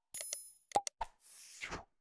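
End-screen sound effects: a short bell-like ding, then a mouse double-click as the cursor presses the notification bell, followed by a brief whoosh near the end.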